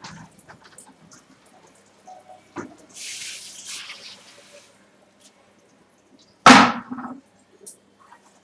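Scattered small clicks, a hiss lasting about a second and a half, then one loud thump about six and a half seconds in.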